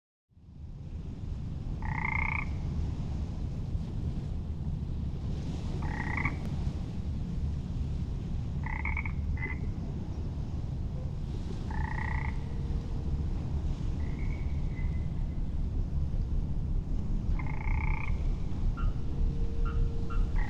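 A frog croaking at night: six short calls, one about every three seconds, over a steady low rumble.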